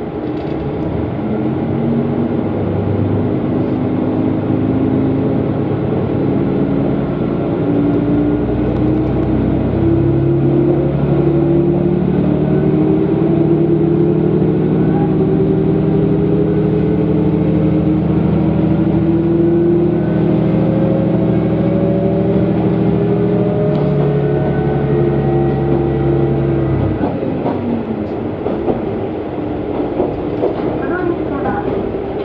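Diesel railcar engine pulling away under power, heard from inside the car, with a roaring running sound. The engine note climbs steadily as the train gathers speed, drops a step about 24 seconds in, and eases right off near 27 seconds, where the pitch falls.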